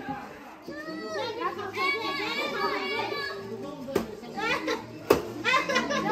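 A group of young children's voices calling out and chattering together, with two sharp knocks about four and five seconds in.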